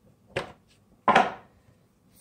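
Two knocks as a deck of oracle cards is handled on a tabletop: a short one, then a louder one about a second in that trails off briefly.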